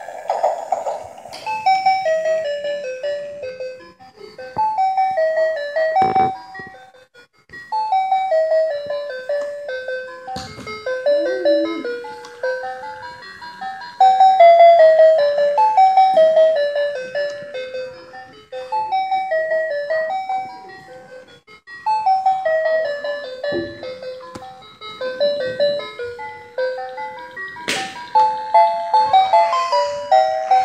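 Battery-powered toy train playing a simple electronic chime tune in short descending phrases, with brief pauses, as it runs around its plastic track. A few sharp knocks cut in along the way.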